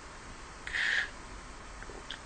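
A short, airy slurp about a second in: yerba mate sucked up through a metal bombilla from a gourd.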